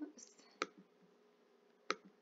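Two faint computer mouse clicks, about a second and a quarter apart, the second one sharper.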